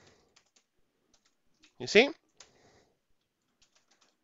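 Typing on a computer keyboard: faint, irregular keystroke clicks scattered through the stretch as words are typed.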